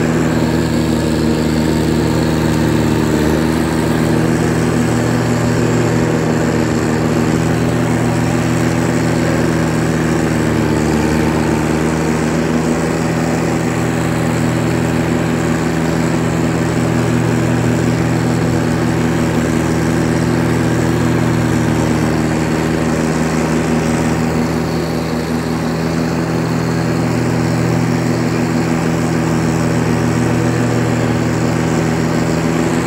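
Diesel engine of a 1983 Kubota G6200 riding mower, fitted with a homemade small turbocharger, running steadily as the mower drives across the lawn. Its level eases briefly about five seconds before the end.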